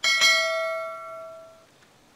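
A click followed at once by a bright bell ding that rings out and fades away over about a second and a half. This is the notification-bell sound effect of a YouTube subscribe-button animation.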